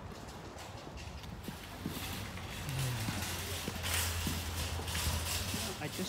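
Footsteps of snow boots on wet pavement, a series of light knocks, with a steady low hum coming in about halfway through.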